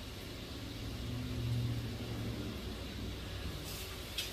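A motor vehicle passing outside: a low engine rumble that swells about a second in and fades away over the next two seconds. Near the end, water from the kitchen tap starts to run.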